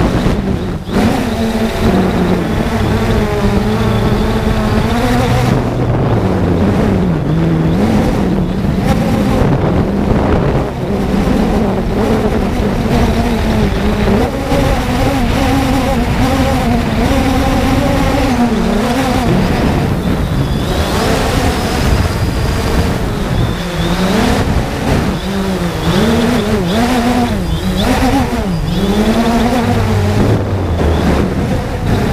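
3DR Solo quadcopter's electric motors and propellers whirring close to the onboard camera, the pitch rising and falling as the throttle changes, with quick up-and-down swings in the last third.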